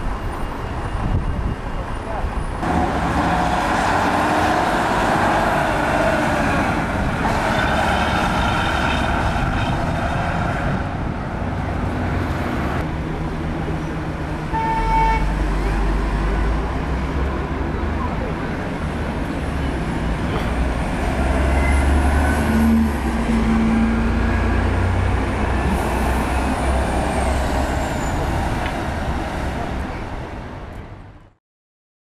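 Street traffic with buses and cars passing, their diesel engines running. A short horn toot comes about halfway through, and a heavy, close engine rumble fills much of the second half.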